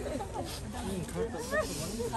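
Several people's voices overlapping, rising and falling in pitch, with breathy hiss between them.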